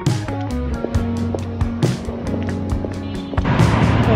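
Background music with a steady beat. Near the end it gives way to city street noise and a woman's voice starting to speak.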